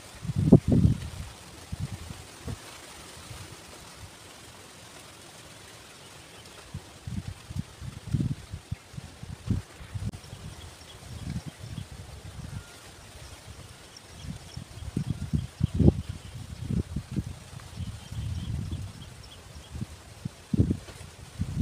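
Wind buffeting the microphone in irregular low gusts, with faint high chirping in the second half.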